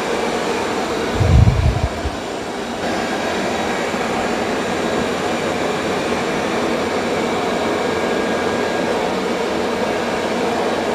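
Two robot vacuum-mops, a Dreame L20 Ultra and a Roborock S8 Pro Ultra, running together while vacuuming and mopping a tile floor, giving a steady noise from their suction motors and brushes. About a second in, a brief low rumble stands out for under a second.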